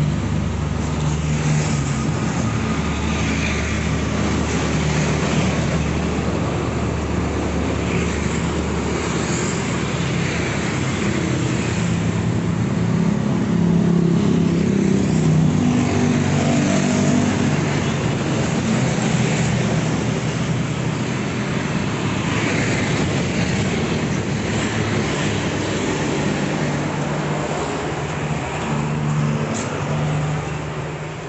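Street traffic: motorcycles and cars passing close by on a busy road, a steady engine and tyre drone that swells loudest around the middle.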